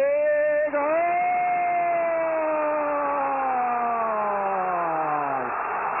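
Spanish-language football commentator's long drawn-out "gol" cry, held for about five seconds with its pitch slowly falling before it breaks off, greeting a goal just scored.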